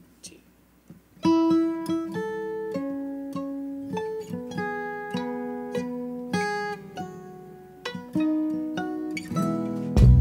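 A country string band's slow instrumental intro starting about a second in: a melody of held notes on fiddle and pedal steel guitar over acoustic guitar, each note struck and then fading.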